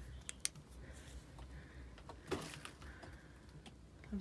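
A few faint, sharp clicks in the first half second and a soft scuff a little after two seconds, over a steady low rumble.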